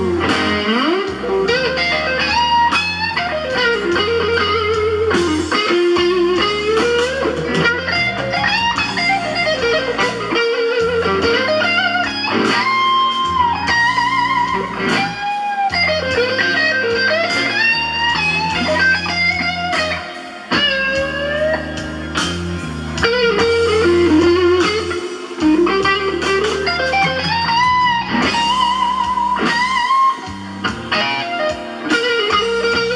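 Electric guitar playing a blues lead, with string bends and vibrato on held notes, over a low bass accompaniment.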